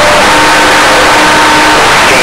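Loud, steady radio static from a receiver between transmissions, with a few faint steady whistling tones over the hiss.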